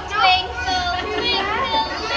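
A girl singing into a microphone, her voice gliding between notes and holding some of them.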